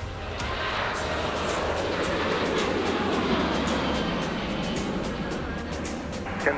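Twin jet engines of a Ryanair Boeing 737 at takeoff thrust during liftoff and climb-out: a broad rushing roar that swells in about half a second in and holds steady over a low rumble, with music underneath.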